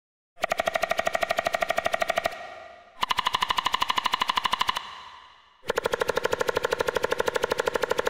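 Synthesized woodpecker pecking made in the Xfer Serum software synth: three rapid runs of about twenty knocks a second, each played on a different note so that each sits at a different pitch, like pecking on different parts of a tree. Each run fades out in a short reverb tail before the next begins.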